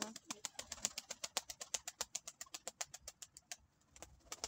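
A flock of domestic pigeons pecking at scattered grain: a fast, irregular run of dry clicks, about a dozen a second, which stops about three and a half seconds in.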